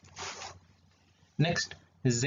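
A short, breathy intake of breath by the lecturer, followed about a second later by a brief spoken syllable.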